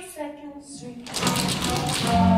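Music from a stage musical number with voices, quieter at first; from about a second in a rapid run of sharp clicks sounds over it.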